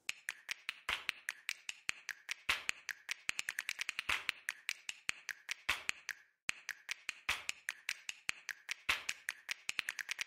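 Sharp clicks and taps in a fast, irregular run, several a second, from sped-up work on a car: a trolley jack being worked and a rear wheel being taken off. There is a brief pause about six seconds in.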